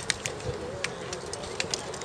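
A dove cooing faintly over open-air ambience, in a low wavering call, with scattered light clicks and taps.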